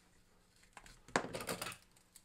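Quiet at first, then a short run of light clicks and rustling about a second in, from hands picking up and handling a pair of plastic-handled scissors.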